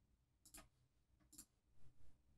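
A few faint computer mouse clicks, about a second apart.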